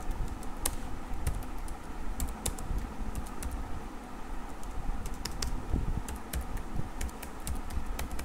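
Computer keyboard being typed on: irregular key clicks as a short phrase is entered, over a low steady background hum.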